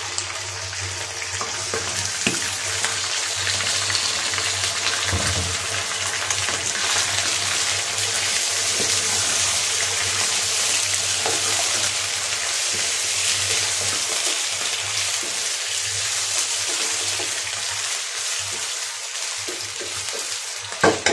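Raw chicken pieces sizzling steadily in hot oil with sliced onions in a non-stick wok. A wooden spatula stirring them gives a few faint knocks and scrapes.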